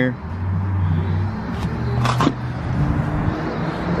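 Steady low hum of a motor vehicle engine running, with a brief higher sound about two seconds in.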